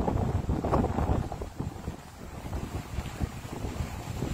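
Low rumbling wind noise buffeting a phone's microphone, heavier in the first second or so and then easing.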